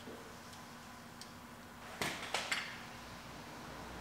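Faint handling sounds from plugging in a car's fog-light wiring connector: a few light clicks about two seconds in, over a faint steady hum.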